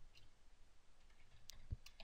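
Near silence with faint computer keyboard key clicks, the sharpest about one and a half seconds in.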